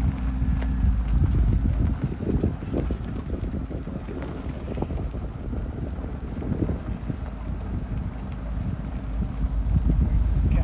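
Low rumble of a vehicle's engine as it creeps slowly forward, with wind buffeting the microphone. A steady engine hum is plainest in the first couple of seconds.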